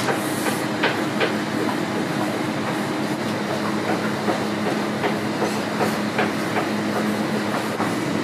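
Steady mechanical hum of a kitchen workroom, with scattered light taps and clicks as small wooden rolling pins and a wooden spatula work on the table while dumplings are rolled and filled.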